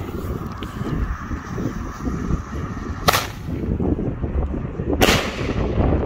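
Two sharp firework bangs from airbombs, the second about two seconds after the first, each with a short echoing tail. Wind rumbles on the microphone throughout.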